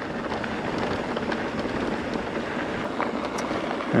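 Mountain bike rolling downhill on a dirt and gravel trail: steady noise of the tyres on the loose surface mixed with wind on the microphone, with a couple of light clicks near the end.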